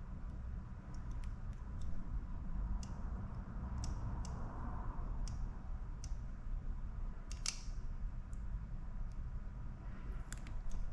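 Small blade picking and scraping the backing off 3M double-sided foam tape on the back of a chrome car badge: scattered light clicks and ticks over a low steady hum.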